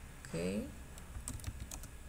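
A few quick clicks of computer keyboard keys in the second half, as a number is typed.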